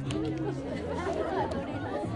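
Crowd of students chattering, many voices talking over one another.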